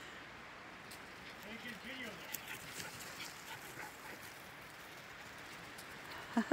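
Miniature schnauzers whimpering and yipping faintly, a few short calls about two seconds in.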